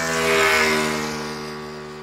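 Outro logo sting: a steady droning tone with a rushing whoosh that swells about half a second in, then slowly fades.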